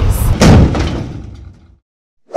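A single loud thud-like hit about half a second in, dying away over about a second into dead silence, like an edited-in impact sound effect.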